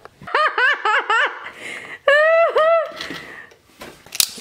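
A person laughing: a quick run of about five short, high-pitched ha's, then two longer drawn-out ones about two seconds in.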